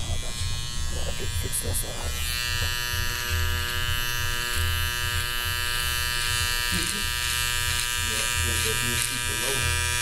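Cordless electric hair trimmer buzzing steadily as it trims a full beard along the jawline and neck.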